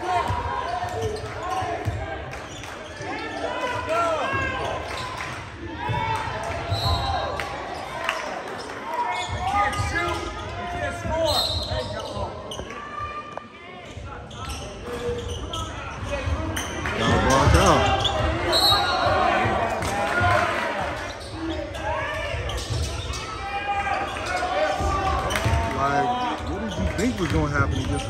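A basketball being dribbled and bounced on a hardwood gym floor during a game, with players moving on the court and many spectators talking, all echoing in a large gymnasium.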